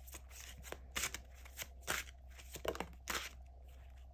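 Tarot deck being shuffled by hand: a run of soft, irregular card flicks and rustles, with a card pulled from the deck near the end.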